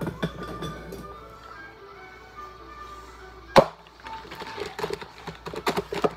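Background music playing, with one sharp snap about three and a half seconds in and a few quick clicks near the end as a package of pasta shells is worked open by hand.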